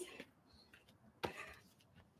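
Mostly quiet, with one short knock about a second in: a burpee's hands or body landing on an exercise mat.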